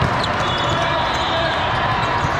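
Steady din of a busy indoor volleyball tournament hall: volleyballs thudding on the courts, scattered sneaker squeaks and a mass of voices, all echoing in the big hall.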